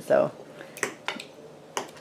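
Three light, sharp clicks of cutlery tapping on plates, a little under a second in, just after, and near the end.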